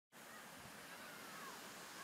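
Faint, steady hiss of water sheeting down the glass-brick face of a fountain tower, with a faint falling call near the middle.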